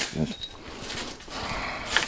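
Soft rustling of pepper-plant leaves and stems being handled and brushed through, dipping about a second in and swelling again toward the end.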